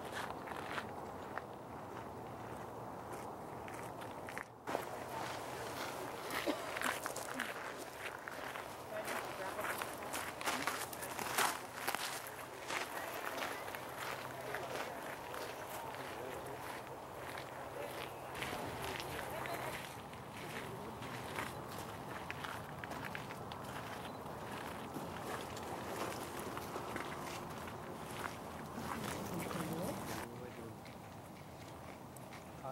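Indistinct voices and footsteps, with scattered clicks and knocks, busiest in the middle stretch.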